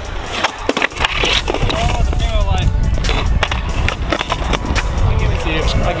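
Skateboard wheels rolling over rough asphalt with a steady low rumble, broken by several sharp clacks of the board's tail popping and the board slapping back down as flat-ground flip tricks are tried.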